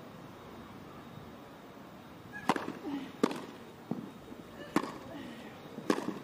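Tennis ball struck by rackets in a rally: after a hush, about five sharp knocks roughly a second apart, starting about two and a half seconds in.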